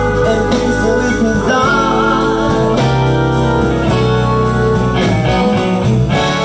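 Live electric blues band playing: amplified blues harmonica played through a vocal microphone, with sustained, bending notes over electric guitars, bass, drums and keyboards.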